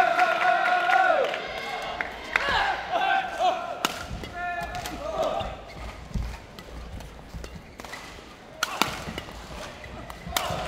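Badminton rally: shouted calls from team supporters, with a long held shout in the first second, then sharp racket strikes on the shuttlecock, the loudest about four seconds in and near the end.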